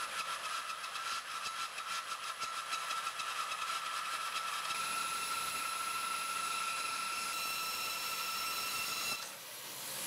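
Bandsaw with a three-quarter-inch blade resawing a zebrawood board on edge: a steady cutting noise with a thin high whine, dropping away about nine seconds in.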